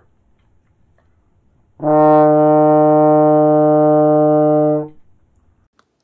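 Tenor trombone with F attachment playing one held concert D in fourth position with the F trigger pressed, a steady note of about three seconds starting about two seconds in. With the trigger down, fourth position is too short for the longer tubing, so the note comes out very sharp.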